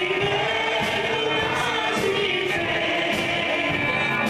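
Live gospel worship song: singing over a band of drum kit and electric guitar, with cymbals struck about twice a second.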